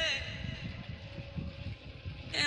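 A pause between phrases of a female solo vocal performance: the held sung note stops at the start, leaving a faint lingering tone that fades over low, uneven background noise.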